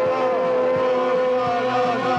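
Live post-punk band recording: a long, held, wavering tone over a steady beat about every three-quarters of a second.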